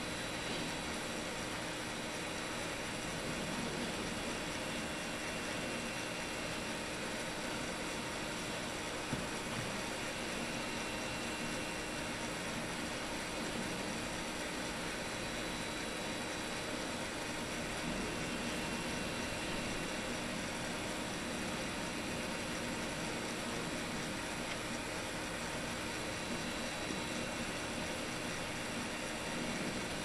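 Steady, even hiss of a recording's noise floor, with faint steady hum tones under it and one small click about nine seconds in.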